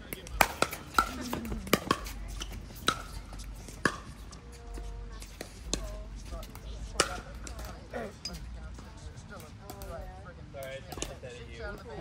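Pickleball paddles striking a plastic ball: a quick run of sharp pops during a rally in the first few seconds, then a few scattered pops later on.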